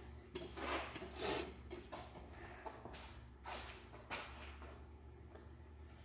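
A few brief, faint rustling and scraping noises from handling the tape, towel and scissors, spread unevenly with most in the first few seconds.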